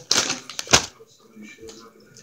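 A Lay's potato chip bag crinkling as it is handled: crackling at the start and one sharp, loud crackle just under a second in, then quieter rustling.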